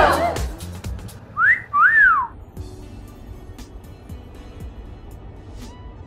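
A two-note wolf whistle about a second and a half in: a quick rising note, then a longer one that rises and falls, over background music.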